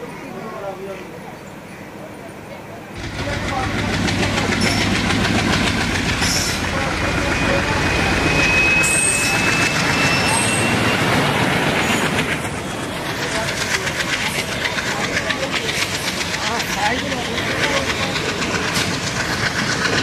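Passenger train coaches running, heard from an open doorway: a loud, steady rush of running noise that comes in suddenly about three seconds in, with a faint thin squeal rising slightly in pitch in the middle and a rapid, even clatter of wheels over the track in the second half.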